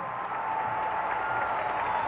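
Stadium crowd cheering and applauding after a touchdown: a steady wash of crowd noise.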